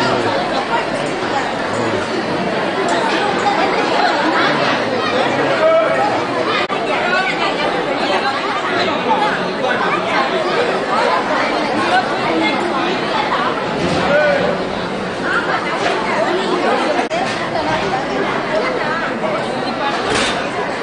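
Crowd of devotees talking and calling out at once: a steady babble of many overlapping voices.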